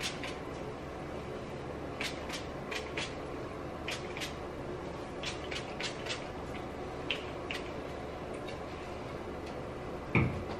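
Finger-pump spray bottle of heat protectant spritzing onto hair in about a dozen short, quick sprays with brief pauses between them, over a low steady room hum.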